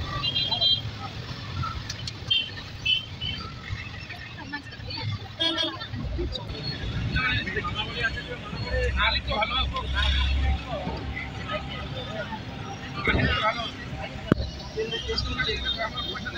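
Busy street traffic heard from a moving open-sided rickshaw: engine and road rumble throughout, short horn toots, and people's voices nearby. A heavier low rumble passes about nine seconds in.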